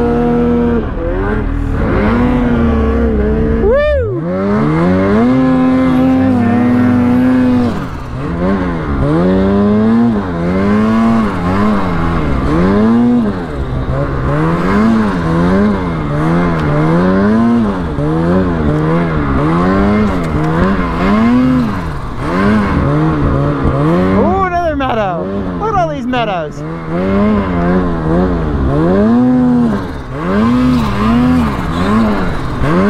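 Ski-Doo 850 two-stroke snowmobile engine revving up and down over and over as the throttle is worked through deep powder, about once a second. About four seconds in, the revs drop away and then climb back steeply.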